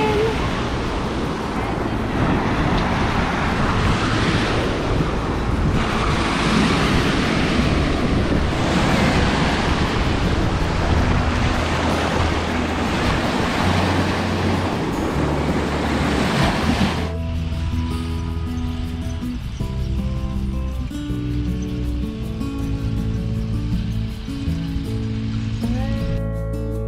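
Small waves breaking and washing up a sandy beach, with soft background music underneath. About two-thirds of the way through, the surf cuts off suddenly and only the music carries on.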